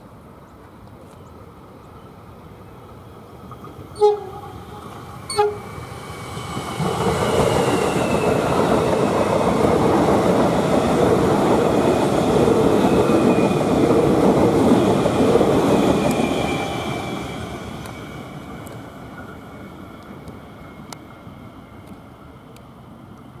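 Melbourne Metro Siemens Nexas electric multiple unit giving two short horn toots about a second and a half apart, then passing close by with loud wheel-on-rail noise and a faint high whine that falls in pitch, fading away as it recedes.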